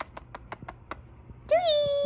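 Small dog whining: a quick run of clicks in the first second, then one long steady whine starting about one and a half seconds in.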